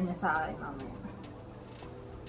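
A woman's voice finishing a short phrase, then faint room noise with a few light clicks.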